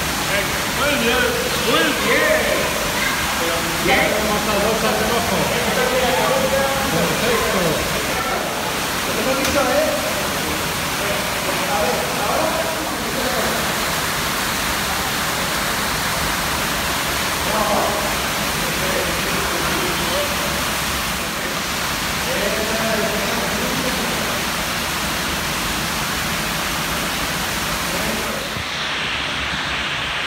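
Steady rush of running water filling the space, with indistinct voices over it in the first ten seconds and now and then later.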